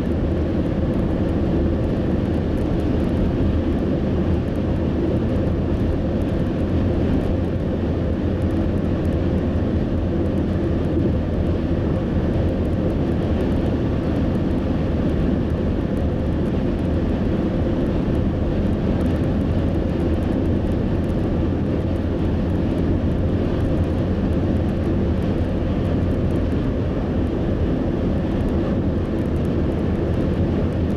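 Steady road and engine noise heard inside a car's cabin while driving on a highway: an even, low rumble of tyres and engine that holds level throughout.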